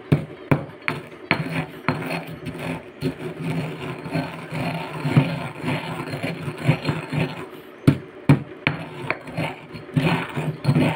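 A pestle pounding and grinding dry eggshells in a mortar, crushing them to powder. Sharp knocks about twice a second give way to steadier grinding in the middle, and the knocks return near the end.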